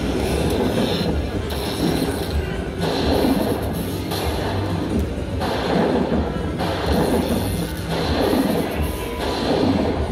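Aristocrat Dollar Storm slot machine's win tally: game music with a crashing lightning effect about every second and a half, each one adding a bonus value to the winner meter as it counts up.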